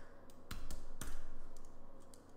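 Several short clicks of computer mouse buttons and keys, with two louder ones about half a second apart near the middle.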